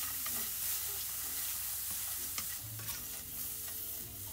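Wooden spatula stirring small dried fish around a hot nonstick frying pan: a steady dry hiss and rustle with a few light clicks as the fish are pushed and turned.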